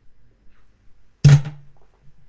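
A single loud thump about a second and a quarter in, close to the microphone, with a short low ring fading after it, as of the desk or recording device being knocked.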